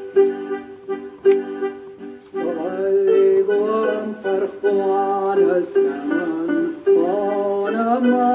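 Accordion playing held chords in a traditional Gaelic song, then a man's voice begins singing in Scottish Gaelic over it about two and a half seconds in.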